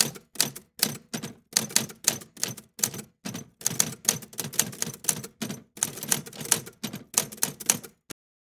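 Typewriter keystroke sound effect: single key strikes in an uneven run, about two to three a second.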